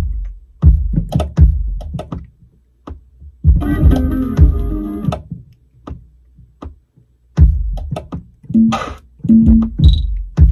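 Programmed drum-machine beat looping at 80 BPM, led by a deep electronic kick drum that repeats in an uneven pattern. About three and a half seconds in, a sustained pitched sound with several notes rings for over a second. Near the end, short low pitched notes are played over the kick.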